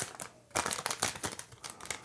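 Foil Pokémon Burning Shadows booster pack wrapper crinkling as it is handled and torn open: a run of short crackles, with a brief lull about half a second in.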